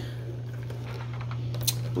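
Handling noise from a cardboard board-game box being turned over close to the microphone: faint ticks and one sharp click near the end, over a steady low hum.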